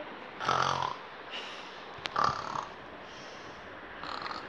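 A child making short mock snoring sounds while pretending to sleep: two brief snores, about half a second and two seconds in, with a sharp click just before the second.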